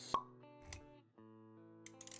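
A single sharp pop sound effect just after the start, then a softer low thump about three quarters of a second in, over gentle background music with held plucked-guitar notes.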